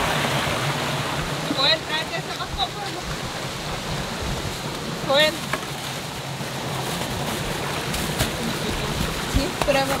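Steady rush of a stream running over rocks. Short high voice calls break in about two seconds in and again at about five seconds.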